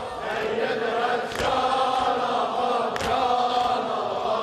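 A hall full of men chanting a Shia mourning lament (noha) together, many voices in unison. Chest-beating strikes land in time with it, two sharp slaps about a second and a half apart.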